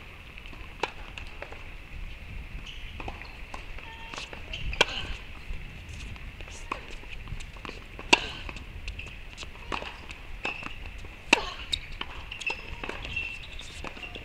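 Tennis balls struck by rackets in a rally on a hard court, a sharp pop roughly every three seconds, with the loudest hits near the middle. Softer clicks of ball bounces and footsteps fall between the hits, over a steady faint high hum.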